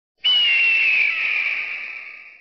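A bird of prey's single screaming call. It is a high, harsh note that falls slightly in pitch and fades out over about two seconds.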